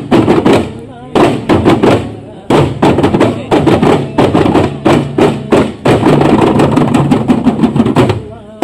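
Daf (duff) frame drums struck by hand in quick rhythmic clusters by a group of men in a duff muttu performance, with men's voices under the drumming. The strikes grow denser and continuous in the last couple of seconds.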